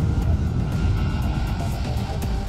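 Background music with a steady beat over the low rumble of a C-17 Globemaster III's four turbofan engines at takeoff power.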